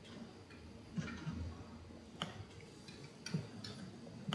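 Four faint, sharp clicks spaced unevenly about a second apart over quiet room tone.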